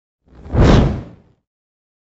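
A single whoosh sound effect for an animated title graphic, swelling up and fading away within about a second.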